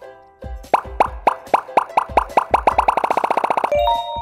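Cartoon intro jingle built from popping "bloop" sounds, each rising quickly in pitch, over a light beat; the pops speed up into a rapid run and stop about three and a half seconds in, giving way to a short held chord.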